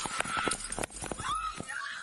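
Police body-camera audio of a chaotic moment: a stream of sharp knocks and rustling as the worn camera is jostled while the officer moves, with a high-pitched human cry or scream that rises and falls twice.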